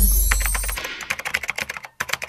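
Keyboard-typing sound effect: a rapid run of clicks, about ten a second, that types out text. It comes after a deep boom that fades away over the first second.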